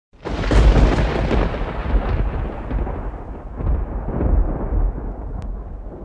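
A loud, deep rolling rumble that starts suddenly and slowly fades away over several seconds.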